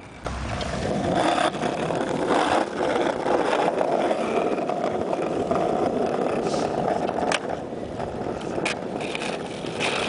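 Skateboard wheels rolling steadily over a concrete sidewalk, with a couple of sharp clicks near the end.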